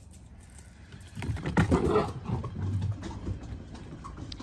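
A puppy scrambling and trotting on a wooden deck, its paws knocking on the boards in a loud rush of steps that starts about a second in and lasts about two seconds.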